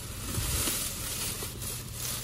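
Thin plastic shopping bags rustling and crinkling as a hand rummages through them and pulls out a handbag.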